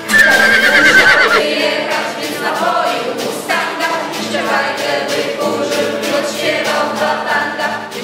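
A horse whinnying once, a quavering high call lasting about a second and a half at the start, over background music with choral singing that carries on to the end.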